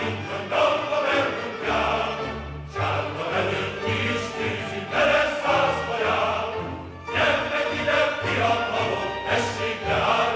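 A choir sings a Hungarian verbunkos (recruiting-dance) song in phrases, with a short lull about seven seconds in.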